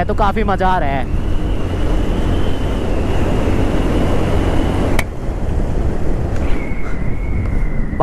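Motorcycle running along a paved road, heard through wind buffeting on the rider's action-camera microphone: a steady low rumble with a thin steady whine. A single click comes about five seconds in, after which the sound dips slightly.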